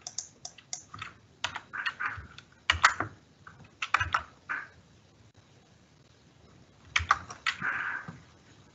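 Computer keyboard typing: irregular bursts of keystrokes for about five seconds, a pause of about two seconds, then a last quick cluster of keystrokes near the end.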